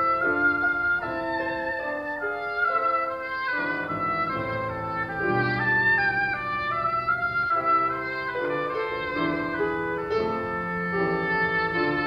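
Oboe playing a melody over grand piano accompaniment, a classical piece with continually changing notes.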